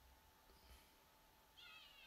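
Near silence: faint room tone, with one brief, faint high-pitched cry falling slightly in pitch near the end.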